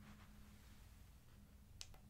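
Near silence: room tone with a faint steady hum, broken by one short click near the end.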